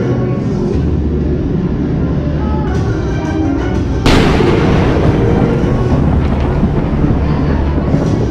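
Dramatic orchestral preshow soundtrack with a low steady rumble, broken about four seconds in by a sudden loud boom that rumbles away over the following seconds.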